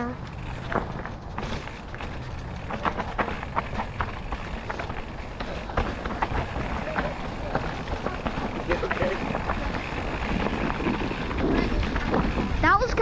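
Mountain bike rolling down a loose rocky trail: a steady rumble of tyres on gravel with frequent clatters and knocks as the bike rattles over the stones.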